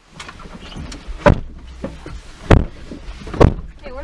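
Car doors being shut, three heavy thumps about a second apart, over a low steady rumble.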